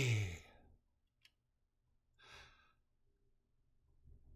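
A voice draws out a last word with a falling pitch that trails off within the first half second. A short breathy exhale comes about two and a half seconds in, and the rest is near silence.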